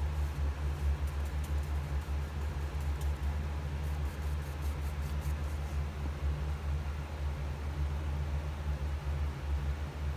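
A steady low hum or rumble with a faint hiss, and a few faint light ticks in the first half.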